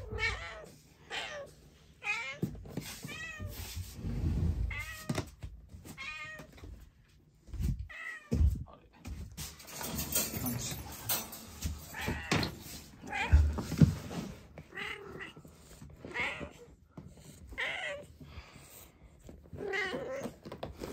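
Domestic cat meowing over and over, one drawn-out call every second or two, with a few dull thumps in the middle.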